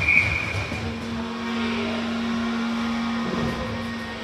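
A hockey referee's whistle blows once, briefly, right at the start, stopping play. It is followed by a steady low tone that holds for about two and a half seconds over the rink's background noise.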